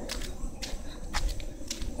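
Footsteps of a person walking, a few soft, irregularly spaced steps, over a low steady rumble.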